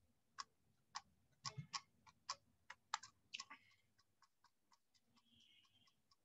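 Faint, irregular clicking, about ten short clicks in the first three and a half seconds, then stopping; otherwise near silence.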